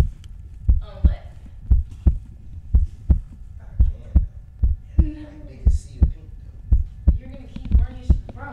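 Heartbeat sound effect: a steady lub-dub double thump about once a second, with faint voices underneath.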